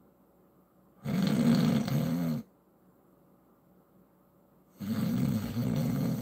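A man making mock snores: two long snores, the first about a second in, the second near the end.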